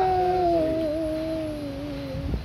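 A man's voice holding one long note of the Islamic call to prayer (adhan). The note slowly falls in pitch and fades out near the end.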